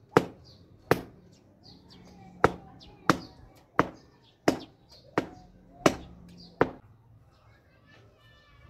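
A thin rod beating raw wool on a hard floor: nine sharp strikes about 0.7 s apart, then they stop near the end. This is hand-beating the fleece to loosen and clean it before spinning.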